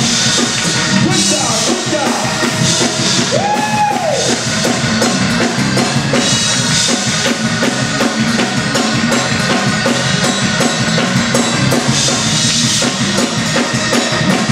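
Live church band playing up-tempo Pentecostal shout music, a drum kit driving a fast, steady beat. A brief rising-and-falling tone cuts through about three and a half seconds in.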